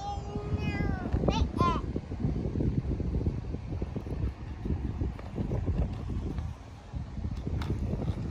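A small child's high-pitched squeals and calls during the first two seconds, then a low, uneven rumble.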